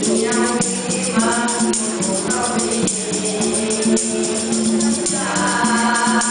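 A boys' nasyid vocal group singing a song in harmony through microphones, over a steady hand-drum and shaker-like percussion beat.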